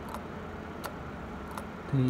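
Quiet room noise with three light clicks, about a second and less apart, from the plastic base and switch assembly of an electric kettle being handled.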